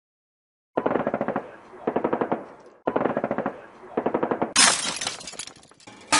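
Intro sound effect: four short bursts of rapid rattling clicks, about fifteen a second, like a machine-gun rattle. About four and a half seconds in comes a louder hissing crash that fades away.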